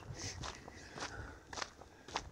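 A few soft footsteps of a person walking on a woodland path.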